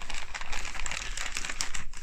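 Plastic bags being handled and moved, a continuous irregular crinkling and rustling.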